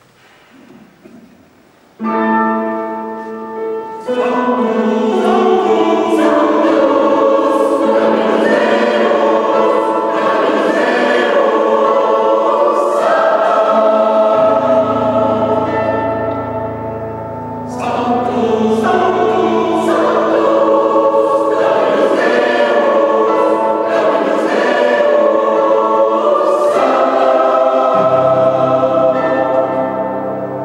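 Mixed choir singing a sustained, slow piece in a large stone church. The voices enter about two seconds in and build after a further two seconds, with steady low notes joining underneath about halfway and again near the end.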